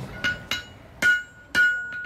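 Four sharp hammer blows on steel, the last two leaving a steady, high-pitched metallic ring.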